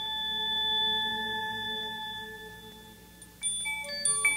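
A bell-like chime tone rings out and slowly fades, then a quick run of struck, glockenspiel-like notes begins near the end.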